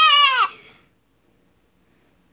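A child's high, put-on character voice holding a wavering, vibrato note that trails off about half a second in, followed by near silence.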